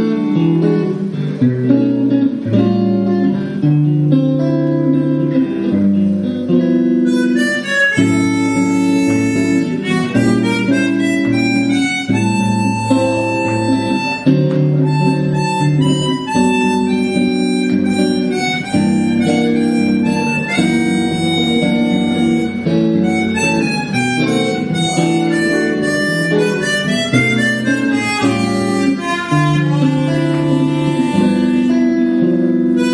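Harmonica and guitar duet playing a bossa nova tune: guitar chords alone at first, with the harmonica coming in on the melody about seven seconds in and carrying it over the guitar from then on.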